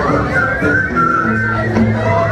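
Live music in a club: held low instrument notes with a high, steady whistle carried over them for about a second, early in the stretch, amid crowd noise.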